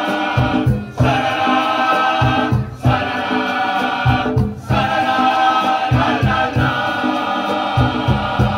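Canarian murga: a large men's choir singing loudly together, the voices breaking off briefly between phrases about every two seconds, over a steady low drum beat.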